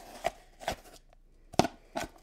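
An ice cream scoop knocking and scraping in a plastic tub of homemade ice cream: four short, sharp knocks.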